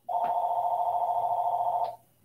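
An electronic trilling tone, held steady for nearly two seconds with a fast flutter, starting and stopping abruptly.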